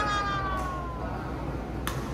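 A high, drawn-out tone slides slowly down in pitch and fades out in the first second. Just before the end, a racket strikes a badminton shuttlecock once on the serve: a short, sharp crack.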